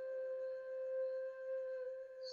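Background music: one steady held tone with a few fainter, higher tones sustained above it, and no beat.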